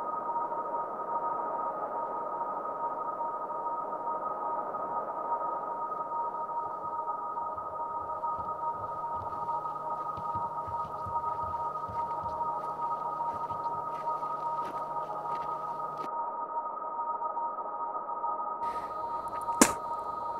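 A steady high drone of two held tones over a rushing hiss, with a single sharp click shortly before the end.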